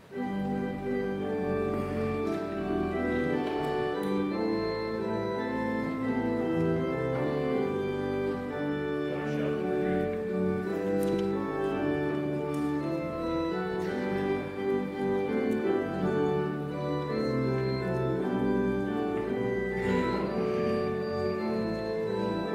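Church organ playing sustained chords that change from one to the next, starting suddenly at the outset.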